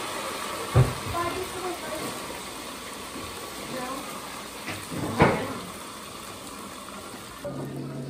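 Two dull knocks, about a second in and about five seconds in, as a plastic cookie cutter is pressed through cookie dough onto a stone countertop, over a steady hiss. A low steady hum starts just before the end.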